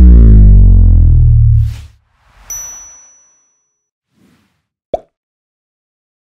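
Animated-logo sting sound effects: a loud deep boom with a falling sweep lasting about two seconds, then a whoosh and a bright ding with a high ring, and a sharp click near the end.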